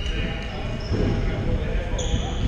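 Futsal ball being kicked and thudding on a wooden indoor court, with sneakers squeaking on the floor and players calling out indistinctly, all echoing in a large sports hall.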